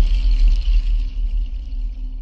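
TV station ident sting: a deep bass rumble under a high, shimmering tone, both fading away in the second half.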